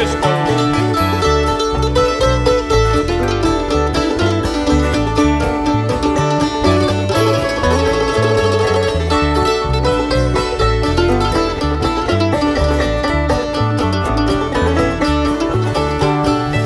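Bluegrass instrumental break with no singing: a five-string banjo, mandolin, guitar and bass play together, with a steady bass beat under fast picked notes.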